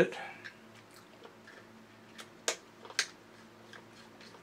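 Light clicks and scrapes of a flat-blade screwdriver working a small screw deep in a recessed hole in a plastic toy robot's body, the tip hard to keep in the screw's slot. Two sharper clicks come about half a second apart a little past halfway.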